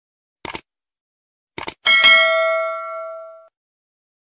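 A few short clicks, then a single struck bell-like chime that rings with several clear tones and fades away over about a second and a half: an intro sound effect.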